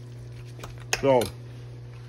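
A metal fork clinks against a glass baking dish a few times as it is set down in the pulled pork, over a steady low hum.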